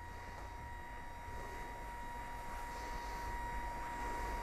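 Permobil M3 power wheelchair's electric recline actuator running as the backrest lowers: a faint, steady electric hum with a thin high whine, growing slowly louder.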